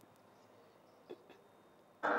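Near silence, broken once by a faint short sound just after a second in.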